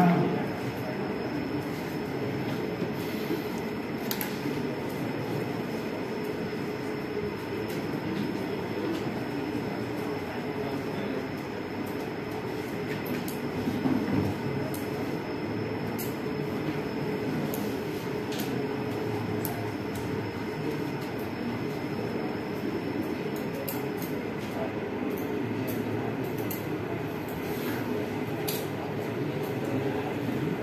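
Steady low background rumble of room noise with a faint thin high whine, fading out about two thirds of the way through, and a few faint clicks.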